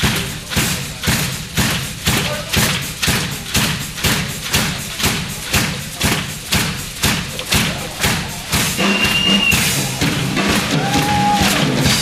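Pearl drum kit played in a steady beat of heavy strokes, about two a second. About eight seconds in, the sound turns denser and more continuous, with pitched tones and short gliding tones joining the drums.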